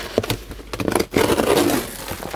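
Corrugated cardboard of a large shipping box being torn open by hand, a rough ripping and scraping that gets louder in the second half.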